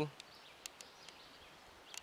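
Quiet woodland ambience with a faint high hiss and a few faint scattered clicks.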